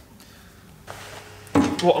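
Quiet workshop room tone with one faint click a little under a second in, then a man's voice begins near the end.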